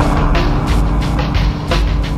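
Electronic chill trip-hop track built on a sampler: a sustained bass line with repeated drum hits, and a noisy swell that comes in at the start and fades over about a second.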